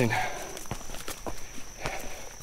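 Footsteps of a hiker walking on a rocky, root-strewn dirt forest trail, a few steps landing at a steady walking pace.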